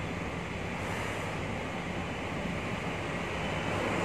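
Steady rushing background noise with a faint low hum, growing slightly louder near the end.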